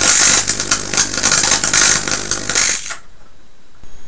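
Homemade vacuum tube Tesla coil firing: its streamer discharges give a loud, dense crackling hiss over a faint low hum, run at a higher ballast setting for more output. It cuts off suddenly about three seconds in.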